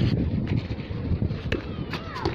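Low rumbling wind noise buffeting a phone microphone, with a sharp knock at the start and another about a second and a half in, and a faint voice near the end.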